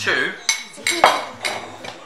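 Metal spoon clinking against a ceramic bowl: several sharp clinks over about a second and a half, the loudest about a second in.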